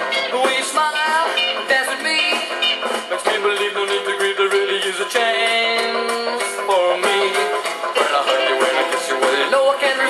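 Early rock and roll band playing an instrumental break with no vocal: electric guitars over drums. The recording sounds thin, with no bass at all.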